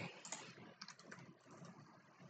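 Faint keystrokes on a computer keyboard: a few scattered taps as a short search is typed into a browser address bar.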